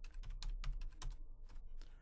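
Typing on a computer keyboard: a quick run of about a dozen keystrokes, entering a part name.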